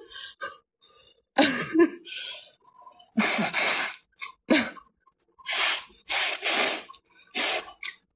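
A woman laughing hard into a tissue held over her nose and mouth: about six breathy, noisy bursts, some up to a second long, a few starting with a short falling voiced squeak.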